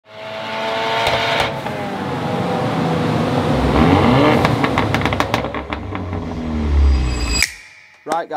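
Ford Mustang EcoBoost's turbocharged 2.3-litre four-cylinder running hard on a chassis dyno, revving up with a rising pitch, then popping and crackling through the exhaust as it comes off the throttle. The sound cuts off suddenly near the end.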